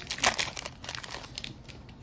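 Foil trading-card pack wrapper being pulled open and crinkled by hand, with a loud crinkle about a quarter second in, then softer crackling that thins out.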